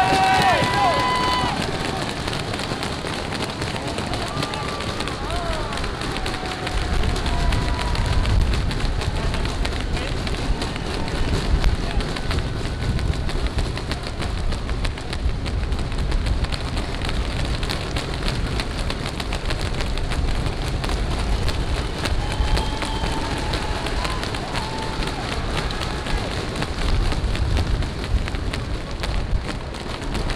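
Roadside spectators at a cycling race shouting, cheering and clapping as riders pass, with a few loud shouts at the start and again about two-thirds of the way in. A low rumble sets in about seven seconds in and runs under the crowd.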